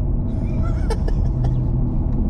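Steady low road and engine drone inside a moving vehicle's cabin, with a single sharp click about a second in.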